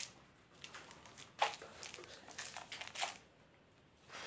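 Food packaging rustling and crinkling as products are handled and lifted out of a box, with one sharper knock or click about a second and a half in.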